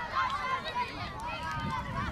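Group of children shouting and calling out together, several high voices overlapping, over a low rumble.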